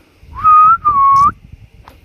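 A person whistling two drawn-out notes: the first rises and then holds, the second is a little lower and turns upward at its end.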